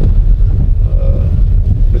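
Steady low rumble of road and engine noise inside the cabin of a Citroën C4 Grand Picasso driving on a wet road.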